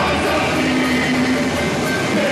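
Live samba-enredo: male voices singing into microphones over a samba band with cavaquinho, loud and continuous, with a note held through the middle.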